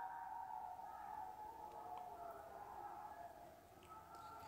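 Near silence: faint room tone with a thin, wavering hum that dies away about three seconds in.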